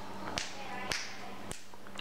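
Three finger snaps about half a second apart, over a faint steady hum.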